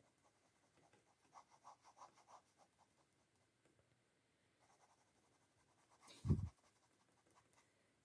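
Faint scratching of a pen drawing short strokes on paper, a quick run of them about a second in, then scattered lighter ones. A single short, soft thump comes about six seconds in.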